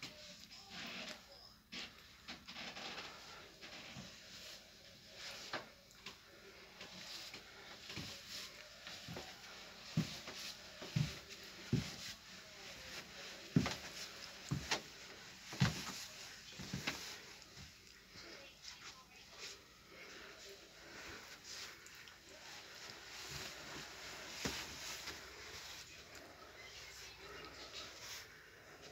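Slow, heavy footsteps coming down carpeted wooden stairs, about one dull thud a second through the middle of the stretch, with cloth rustling in between.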